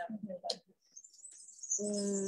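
Birds chirping high-pitched and continuously, starting about a second in.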